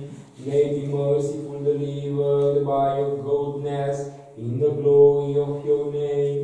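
Male liturgical chant, sung on a nearly level reciting tone with long held notes; the line breaks off briefly about four seconds in and starts again.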